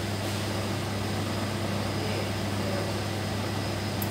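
Laboratory equipment, pumps and fans, running with a steady low hum and an airy hiss. There is a faint tick just after the start and another at the end.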